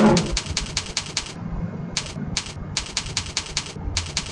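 Computer keyboard keys tapped in quick runs of sharp clicks, several a second, with a pause in the middle, over a faint low steady hum.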